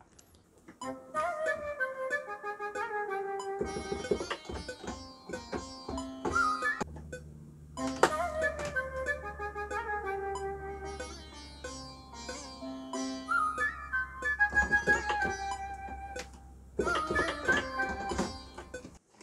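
Software sitar played live from a MIDI keyboard: a short Middle-Eastern-style melody with bent, gliding notes, played three times over. A low sustained note joins underneath during the second pass.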